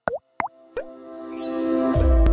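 Animated logo sting: three quick cartoon 'bloop' sound effects about a third of a second apart, then a music chord swelling louder toward the end.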